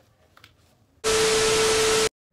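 About a second of near silence, then a loud burst of TV static hiss with a steady hum tone under it, starting abruptly: a static-glitch transition effect.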